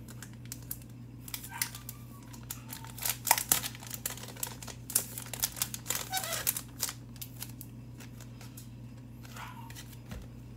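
Packaging crinkling and tearing as it is opened by hand: a run of rustles and sharp clicks starting about a second in and dying away around seven seconds, loudest a little after three seconds. A steady low hum sits underneath.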